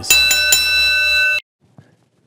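Bright, bell-like ringing chord closing the intro music: a few quick strikes at its start, then a steady ring that cuts off suddenly about one and a half seconds in.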